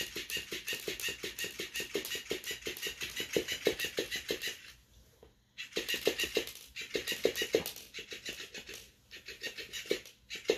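Electric flopping fish cat toy flapping its tail against a hard floor: a fast, even patter of taps, about five a second, that stops for about a second near the middle and starts again.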